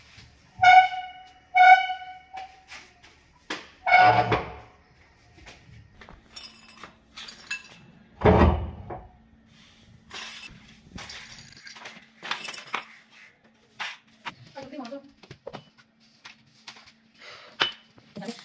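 A broom sweeping a marble tile floor in short brushing strokes, with two loud knocks about four and eight seconds in. Near the start, two short identical pitched tones sound about a second apart.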